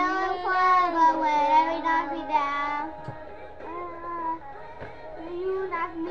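A child singing long, drawn-out notes, loud for the first three seconds, then softer and broken by short pauses.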